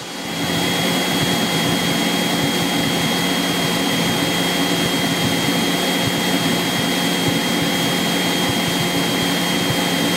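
Steady drone of a single-engine light aircraft's engine and propeller heard inside the cabin, with a thin steady high tone above it.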